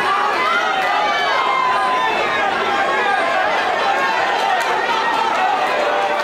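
Fight crowd in a hall shouting and talking at once, many overlapping voices at a steady level.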